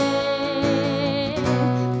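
Live acoustic guitar and female singing: a sung note held with vibrato that ends about a second and a half in, over steel-string acoustic guitar chords that carry on after it.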